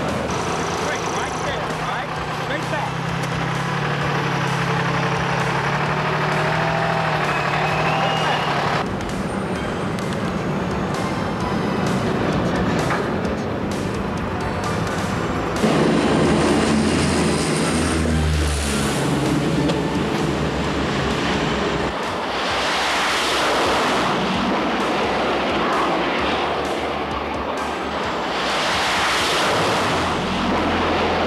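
Jet aircraft engines on an aircraft carrier's flight deck, mixed with background music, with two loud rushing surges of jet noise, one a little after the middle and one near the end.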